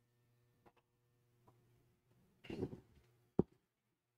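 Near silence with a faint steady hum. There is a brief vocal sound about two and a half seconds in, and a single sharp click near the end.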